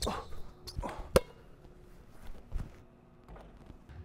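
A man's short 'uh, uh' murmurs, then a single sharp knock of a basketball about a second in, followed by a quiet stretch with faint footsteps on the hardwood court.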